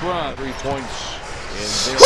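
Basketball game broadcast audio: a commentator's voice over the noise of the arena and play on the court.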